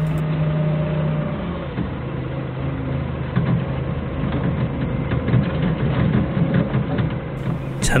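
Doosan 4.5-ton forklift's engine running steadily as it drives onto a rough unpaved track. From about two seconds in, a dense patter of rattles and crunches comes from the machine jolting over the dirt.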